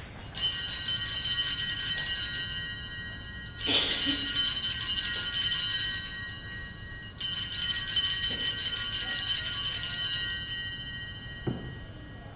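Altar bells, a cluster of small hand bells, rung three times, each ring lasting about three seconds and fading out. They mark the elevation of the consecrated host just after the words of consecration.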